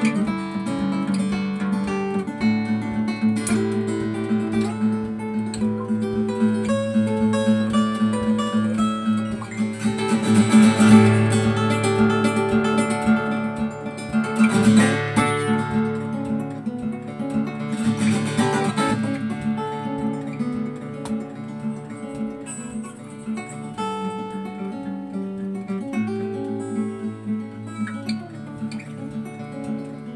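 Solo acoustic guitar played live: a picked melody over sustained bass notes, with strummed chords in the middle, where it is loudest, then quieter playing toward the end.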